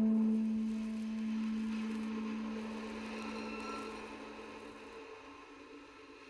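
A single low sustained tone with fainter overtones that starts suddenly and slowly fades, then cuts off abruptly about five seconds in.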